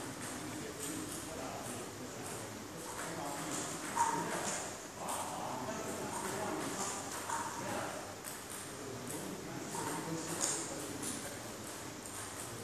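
Indistinct talk between people, broken by a few scattered sharp clicks or taps.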